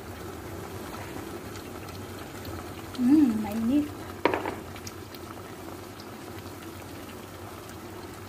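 Chicken pieces cooking in barbecue sauce in a frying pan, the sauce bubbling steadily. A person's voice sounds briefly about three seconds in, followed by a single sharp knock.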